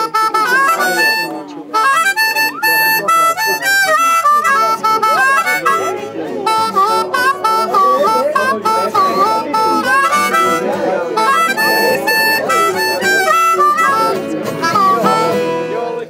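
Blues harmonica played up-tempo over an acoustic guitar, the harp's notes bending up and down in short phrases.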